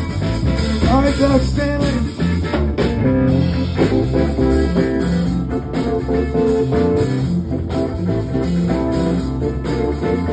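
Live band playing an instrumental soul-funk groove: a steady bass line and drums under electric guitar and keyboard parts.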